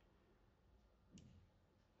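Near silence, with one faint click of a computer mouse button about a second in.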